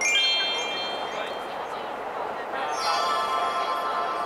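Shimmering chime sound effect from an illuminated Christmas display, marking its light change: a bright flourish of high ringing tones at the start that fades over about a second, then a second flourish near the end that rings on.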